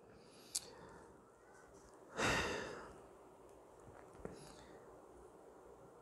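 A man sighing: one audible breath out about two seconds in that fades within a second, with a couple of faint clicks around it.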